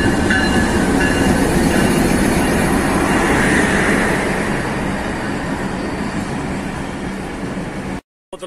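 Pakistan Railways diesel-hauled passenger train pulling in alongside a platform: the locomotive passes and the coaches roll by with steady wheel-on-rail noise that slowly fades as the train slows. A high squeal fades out about two seconds in.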